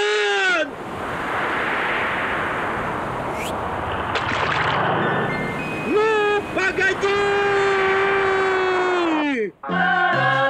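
Cartoon sound track: a short falling yell, then several seconds of rushing sea-wave noise with a brief rising whistle in the middle. It ends with a long held wail that slides down at the end and stops abruptly.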